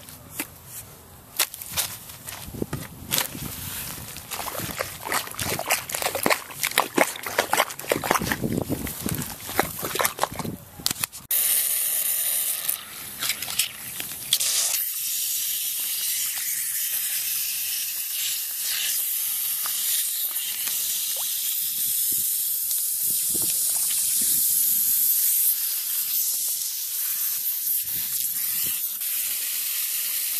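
Shovel chopping and scraping into sod and soil, many short knocks, for about the first eleven seconds. Then a steady hiss of water spraying out of a leak in a rusty buried water pipe, where the pipe was kinked years ago.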